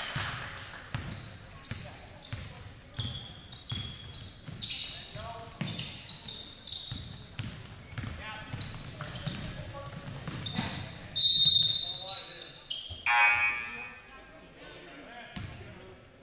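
Basketball bouncing and sneakers squeaking on a hardwood gym floor, with players' and spectators' voices. A loud referee's whistle blows about eleven seconds in, stopping play, and a second loud call follows shortly after.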